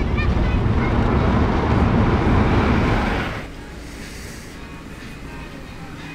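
Steady road and engine noise inside a moving car's cabin, cutting off sharply about three seconds in to a much quieter steady room tone with a faint hum.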